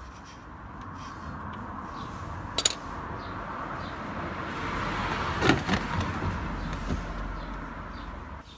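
A vehicle passing by: a hiss with a low rumble that swells slowly, peaks past the middle and fades near the end. Two small clicks, one before the middle and one at the loudest point.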